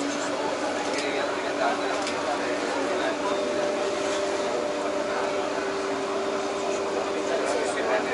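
Passengers chattering aboard a Venetian vaporetto water bus, over the boat engine's steady hum.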